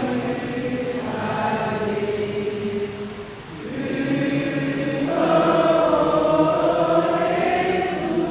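A group of voices singing together in slow, long-held notes. A phrase dies away about three and a half seconds in, and a new, louder phrase builds up soon after.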